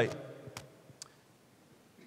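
A man's voice finishing a word, then a quiet pause with two small clicks, a faint one about half a second in and a sharper one about a second in.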